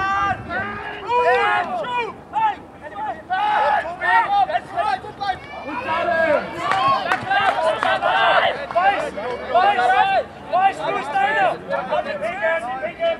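Several voices shouting and calling out over one another without pause as the rugby play runs on, the loudest shouts bunched about four and about seven to eight seconds in.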